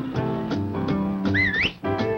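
Cartoon background music with a short, wavering whistle about one and a half seconds in. The music breaks off briefly just after the whistle.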